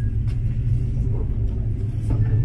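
Steady low rumble inside a moving aerial ropeway cabin as it travels along the cable.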